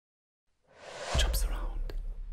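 Logo sting: a breathy whoosh swells up and breaks into a deep bass hit about a second in, with bright swishes on top and a sharp click near the end, then rings on.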